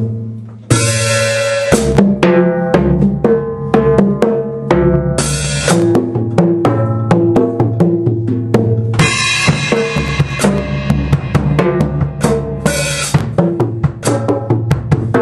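Large drum kit played solo: a cymbal crash about a second in, then fast, busy strokes around many toms, each ringing at its own pitch, with bass drum and snare underneath. Further cymbal crashes come about five seconds in and again around nine and twelve seconds in.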